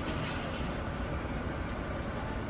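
Disney Resort Line monorail running, heard from inside the car: a steady, continuous low rumble of the train in motion.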